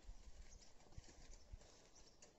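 Near silence: faint outdoor room tone with two soft low knocks, about a second in and half a second later.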